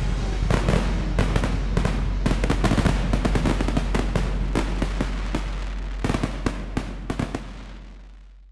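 Fireworks going off: a dense, irregular run of bangs and crackles that thins out and fades away over the last couple of seconds.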